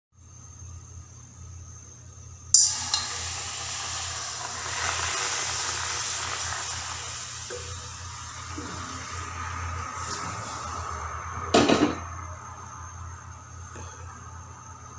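Water sizzling and bubbling in a hot wok on a gas burner. The hiss starts suddenly a couple of seconds in and slowly dies down, with a short clatter of the pan near the end.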